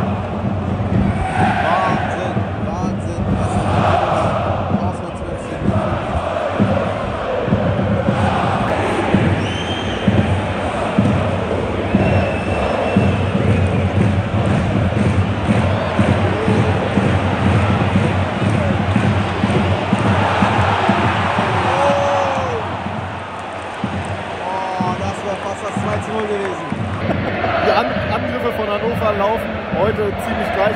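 Football stadium crowd chanting and singing together, a dense, steady wall of many voices.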